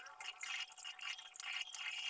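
Tap water running into a sink basin while cupped hands splash it onto the face, a faint steady pour broken by small irregular splashes and drips.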